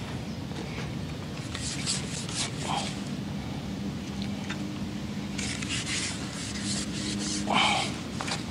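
Rubbing and rustling of close handling noise in two spells, one early and one from about the middle to near the end, over a steady low hum.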